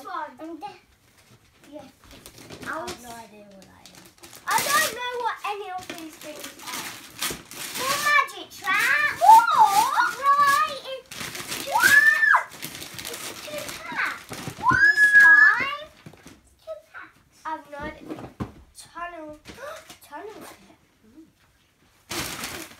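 Young children's high-pitched voices: wordless exclamations and squeals that glide up and down, loudest in the middle. Mixed in is wrapping paper rustling and tearing as a present is unwrapped.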